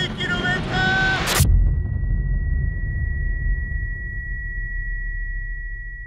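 A man shouting over wind rumble while riding a bicycle fast downhill. About a second and a half in, a sudden loud dull thud cuts him off. A steady high-pitched ringing tone follows and holds over a low rumble that slowly fades.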